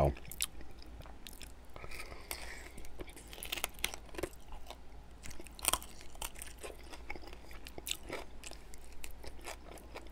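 Close-miked chewing of saucy chicken wings, with many short, sharp crunches and clicks scattered through it as the meat and skin are bitten and worked in the mouth.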